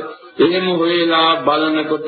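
A Buddhist monk's voice intoning a recitation in a chanting style, with long held notes that step in pitch. There is a short pause just after the start and a brief break about a second and a half in.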